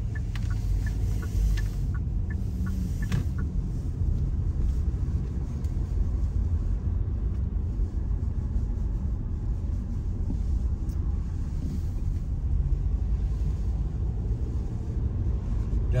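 Inside a moving car: the steady low rumble of the engine and tyres on the road, heard in the cabin.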